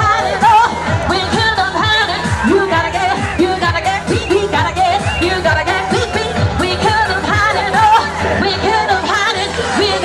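Loud pop song with singing over a steady drum beat, about two beats a second.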